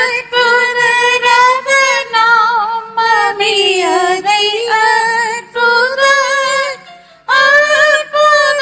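A lone female voice singing a slow hymn in long, high, held notes with vibrato. Short breaks fall between phrases, with a longer pause about seven seconds in.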